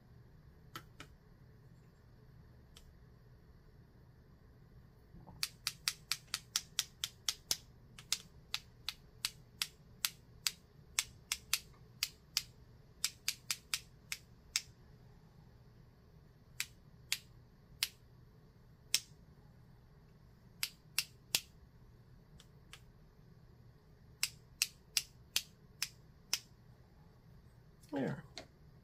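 A paintbrush being tapped to flick spatters of watercolour paint onto the paper: sharp clicks, a few at first, then quick runs of two or three a second with pauses between.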